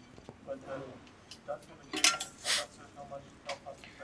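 Small metal clicks and clinks of steel bolts, washers and an Allen key being handled while the bolts are backed out of a bike's head-tube bracket, with a brighter clatter about two seconds in.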